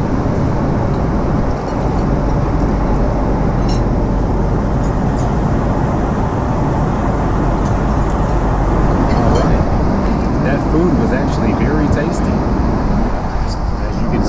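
Steady cabin noise of a Boeing 777-200ER at cruise: a loud, even rush of engines and airflow, heaviest in the low end. A few light clicks come through it, and faint voices show near the end.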